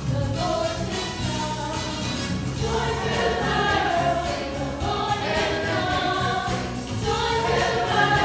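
Mixed church choir singing with band accompaniment, a steady bass line under the voices.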